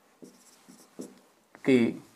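Marker pen writing on a whiteboard: a few short, faint strokes in quick succession, followed by a spoken word near the end.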